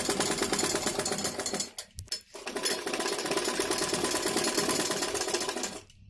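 Domestic sewing machine stitching in a fast, even rattle, sewing down a twice-folded hem on a sleeve edge. It stops briefly about two seconds in, then runs again until just before the end.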